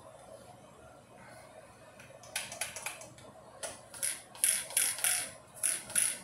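Short clicking, whirring mechanical bursts, about ten of them in quick succession from about two seconds in, as the steering wheel and trigger of a pistol-grip RC radio transmitter are worked.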